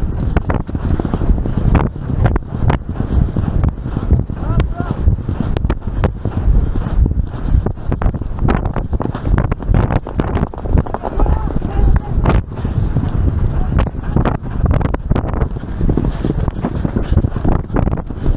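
A racehorse galloping, with a steady run of hoofbeats on turf and a dirt track, heard from the saddle.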